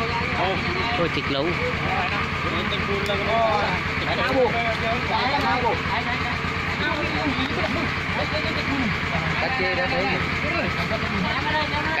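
A công nông farm tractor's single-cylinder diesel engine running steadily to drive a water pump, with people's voices over it.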